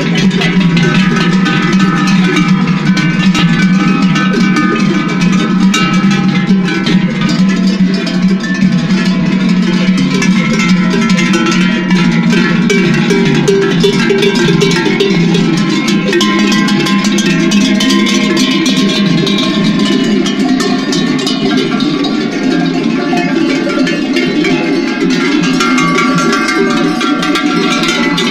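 Many sheep bells clanking and ringing over one another without pause as a large flock of sheep and goats walks along together.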